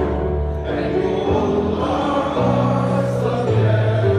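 A large group of male voices singing together in slow, held notes that change pitch every second or so.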